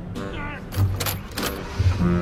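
Keys jangling at a minivan's ignition as the key is put in and turned, with background music underneath.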